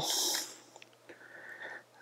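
A short hiss of breath through the nose, then near quiet with a few faint small taps of handling.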